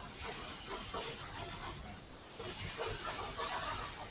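Halwa cooking in a pan as it is stirred, giving a faint, steady sizzling hiss.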